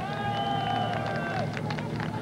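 A horn sounding once, a steady high note held for about a second and a half.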